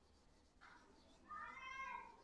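Felt duster wiping a whiteboard, with a short high squeal about a second and a half in that dips in pitch as it ends.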